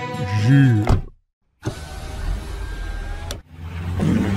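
Cartoon sound effects: a short cry with a gliding pitch, then after a brief silent gap about two seconds of a rushing car sound effect as the pickup truck drives off, cutting off suddenly near the end.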